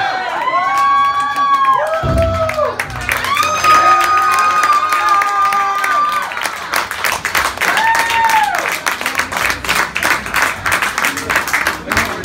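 A man's voice holding long sung or shouted notes over the club PA, three times in the first two-thirds, with the crowd clapping and cheering. The clapping grows denser toward the end.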